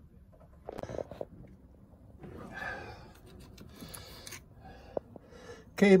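Faint handling noise: soft rustles and scrapes, with a few light clicks and one sharper click about five seconds in.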